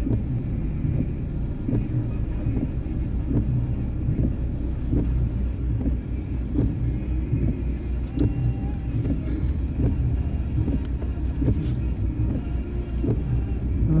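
Steady low rumble of a car heard from inside the cabin while it sits stopped with the engine idling.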